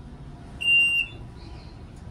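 One short, high-pitched electronic beep from the elevator cab's signal beeper, a single steady tone lasting about half a second.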